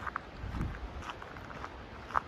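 Faint footsteps on a dirt forest trail, with a low rumble that swells briefly about half a second in.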